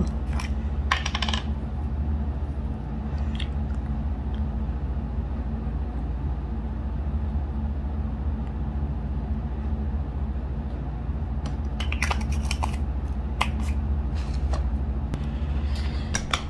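A steady low hum throughout, with a few sharp clicks and taps from handling a small lip-scrub jar in the first second or so, then again in a cluster about twelve to fifteen seconds in.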